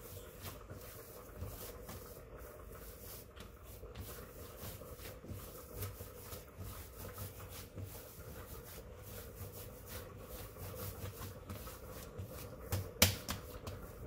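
Hands kneading soft flour-tortilla dough on a stone countertop: irregular soft pats, presses and rubs, with one sharp knock about a second before the end. A faint steady hum lies underneath.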